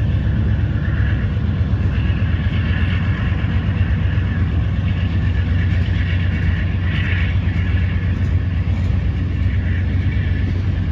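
Freight train tank cars rolling past close by: a steady rumble of steel wheels on rail, with a higher hiss over it that swells and fades a few times.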